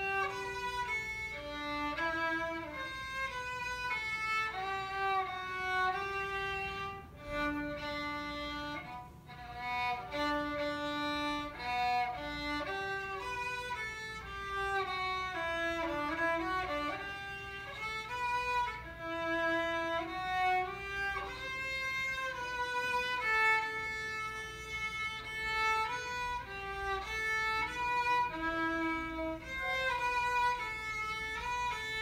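Solo violin played with the bow, unaccompanied: a melody of held notes, one at a time, changing every second or so, with a few sliding notes near the middle.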